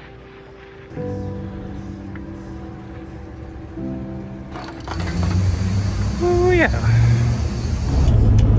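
Background music with steady held notes over the montage; about five seconds in, a louder low rumble of outdoor noise rises under it, and a short voice-like sound slides up and down near the end.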